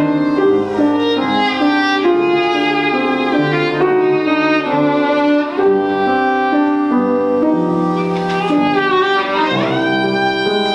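Violin playing a melody in live performance, ending in a quick upward slide into a high held note near the end.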